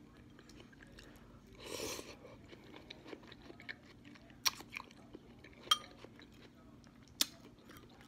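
A person chewing a mouthful of noodles, with a short noisy rush about two seconds in and a few sharp clicks later on.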